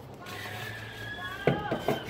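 Children screaming, faint and high-pitched, in long held cries that glide slightly downward. A short knock comes about one and a half seconds in.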